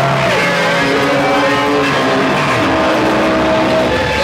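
Loud live noise music from amplified instruments: layered held tones that shift in pitch, with a falling glide about a third of a second in and no steady beat.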